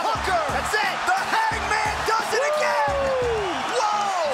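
Arena crowd yelling and cheering at a knockout stoppage, many voices rising and falling at once, with music playing underneath.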